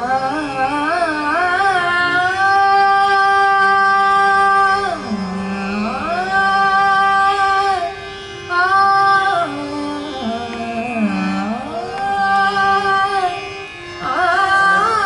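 A woman singing an Indian classical vocal line. It opens with quick wavering ornaments, moves into long held notes, and twice glides slowly down to a low note and back up. A steady drone sounds underneath.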